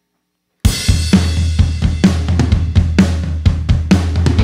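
A live indie pop band starts a song abruptly a little over half a second in, after a moment of silence. A drum kit with bass drum, snare and cymbals keeps a steady beat over a sustained low note.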